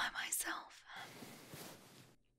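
A woman's soft, breathy whispering close to the microphone, running into a long, quiet exhale.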